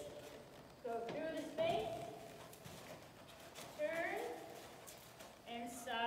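A horse walking on sand arena footing, its hoofbeats soft, while a woman talks in two short stretches over it.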